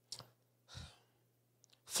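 Near silence from the microphone during a pause in talk, broken by a faint mouth click at the start and a short, soft breath from the man at the microphone just under a second in.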